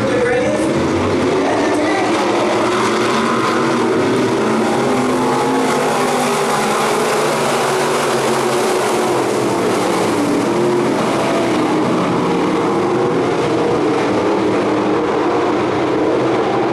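A pack of Sport Modified dirt-track race cars running laps together, many engines at once, their pitches rising and falling with the throttle.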